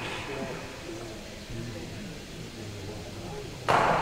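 Faint, indistinct voices murmuring between points, with a man's voice starting up loud near the end.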